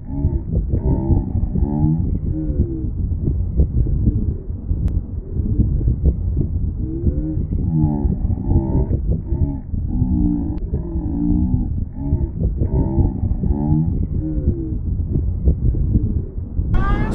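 A dense low rumble with deep, wavering moaning tones drifting over it. The sound is muffled, with no high end at all, like a car-ride recording played back slowed down.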